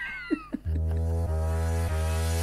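A short meow-like gliding cry fades out at the start, then about two-thirds of a second in the podcast's electronic intro music starts: a loud, sustained synth chord over a heavy bass.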